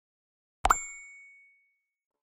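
A cartoon pop sound effect followed by a bright bell ding that rings out and fades over about a second, the notification-bell sound of a subscribe animation.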